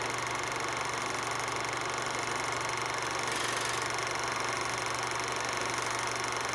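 A steady low hum under an even hiss, unchanging throughout.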